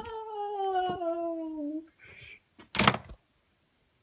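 A long meow-like cry, falling slowly in pitch and ending about two seconds in, then a single knock near three seconds.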